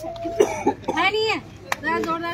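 Short bursts of people's voices and laughter, with a sharp click near the end.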